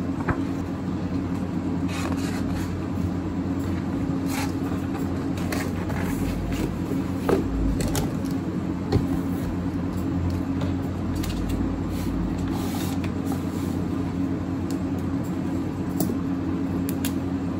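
A steady low mechanical hum, with a few brief rustles and taps as paper pages and a highlighter are handled on a desk; the sharpest tap comes a little before halfway.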